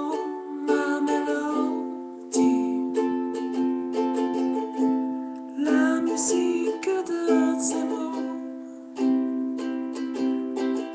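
Kala ukulele strummed in a steady rhythm, its chords ringing between strums, with a few heavier strums every couple of seconds.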